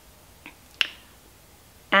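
Two short clicks in a quiet room, a faint one about half a second in and a sharper one a little later.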